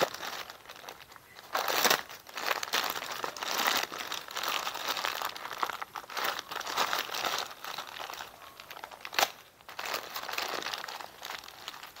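Thin plastic courier mailer bag crinkling and rustling as hands pull it open and rummage inside, in irregular louder and softer crackles, with a single sharp click about nine seconds in.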